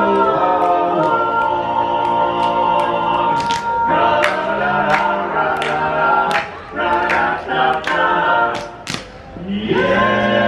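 Barbershop quartet singing a cappella in four-part harmony, holding long chords, with two short breaks in the second half.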